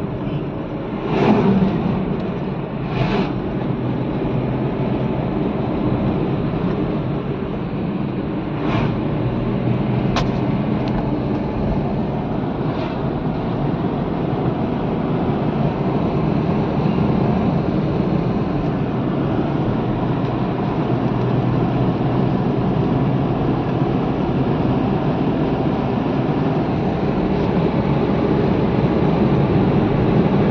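Steady road and engine noise heard inside a moving car's cabin, with a few brief louder sounds in the first ten seconds.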